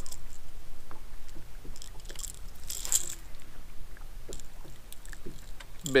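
Light clicks and rattles of a lipless crankbait and its treble hooks being handled as a small largemouth bass is unhooked, with two short rustling bursts about two to three seconds in.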